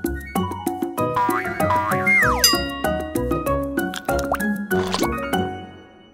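Upbeat instrumental children's music with a bouncy beat, with sliding pitch sweeps over it, the biggest rising then falling about two seconds in. The music fades out near the end.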